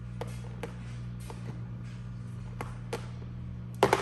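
Light, sharp clicks and taps of plastic toy fishing-game pieces, a handful spread out, with a louder cluster near the end, over a steady low hum.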